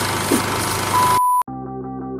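A steady hiss with a steady beep in it, cut off abruptly about a second in; after a short gap, guitar music with a regular pattern starts.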